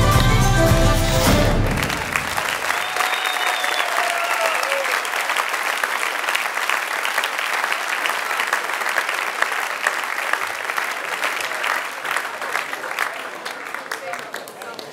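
Music ends abruptly about two seconds in and an audience applauds, the clapping slowly dying away near the end.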